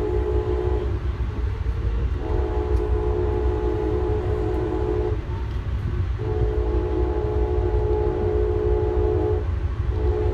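Locomotive air horn sounding a chord in long blasts: one ends about a second in, then two more of about three seconds each follow, in the pattern of a signal for a road crossing. Heard from on board a passenger car over the steady low rumble of the train rolling on the rails.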